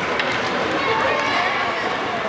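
Indistinct voices calling out and talking in an indoor ice rink during play, over a steady haze of rink noise, with a faint click shortly after the start.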